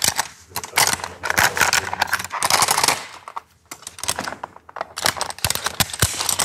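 A rope descender being opened and rope pulled out of it, with its metal hardware clicking and rattling. The clicks come in quick runs with a short pause about halfway through.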